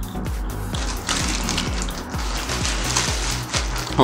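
Background music with a steady beat and bass. From about a second in, the crinkling rustle of paper takeout wrapping being opened runs alongside it.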